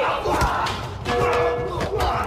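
Men shouting and yelling in a fight, with several sharp hits, over a dramatic film score.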